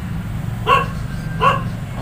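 A dog barking twice, about three-quarters of a second apart, over a steady low hum.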